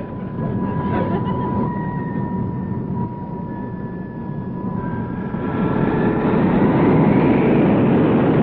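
Jet airliner engines running with a steady whine, the noise swelling louder about five seconds in as they power up for takeoff.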